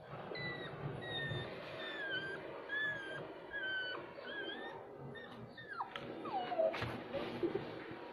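Dog whimpering as it is injected: a run of short, high whines, then two longer whines that fall in pitch about six seconds in. A sharp click follows shortly after.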